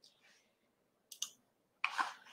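A brief, faint click a little over a second in: a computer click advancing the presentation slide. A short soft noise follows near the end, over quiet room tone.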